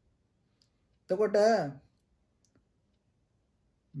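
A man's voice says one short phrase about a second in, in an otherwise near-silent pause in a talk, with a couple of faint clicks.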